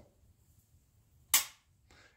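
A single sharp click about a second and a half in: the Ruger Max-9's striker releasing dry as a trigger pull gauge draws the trigger through its break, at just under five and a half pounds.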